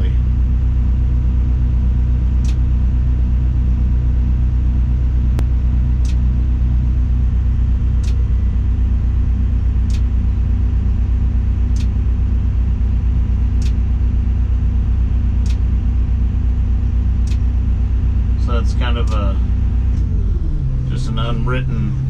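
The crane's diesel engine running steadily, heard from inside the operator's cab, with a faint tick about every two seconds. About twenty seconds in, the engine note shifts to a different steady pitch.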